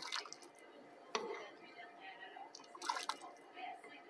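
Hot chocolate being ladled from a pan into a cup: liquid pouring and dripping, with a sharp knock about a second in.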